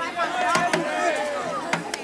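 Voices of people talking near the microphone in the stands, with two sharp knocks about half a second in and near the end.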